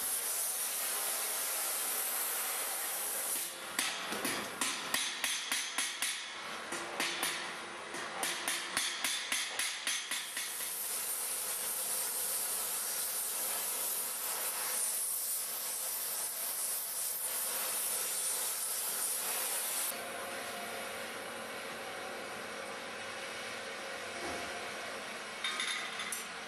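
Oxy-acetylene torch hissing steadily as it heats a wrought-iron collar band. From about four to ten seconds in, a run of quick hammer blows on the hot iron, about three a second, bends the band around the scrolls to bind them. A few more blows come near the end.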